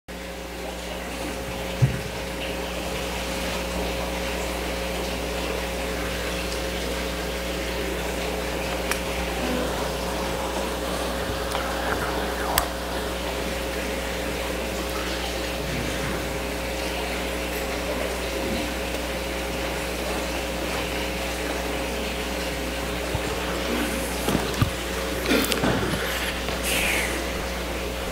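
A steady electrical hum with an even hiss over it, broken by a few isolated clicks. A cluster of knocks and rustles comes near the end.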